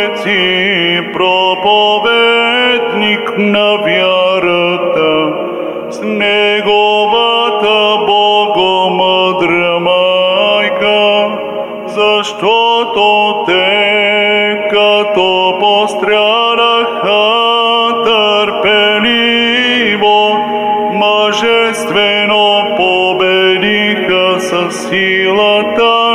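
A solo male cantor sings Orthodox liturgical chant into a microphone. The phrases are slow and melismatic, with long held notes and ornamented turns, broken by brief breaths about six and twelve seconds in.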